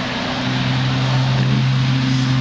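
A steady low mechanical hum, a constant drone over an even hiss, like a motor running nearby.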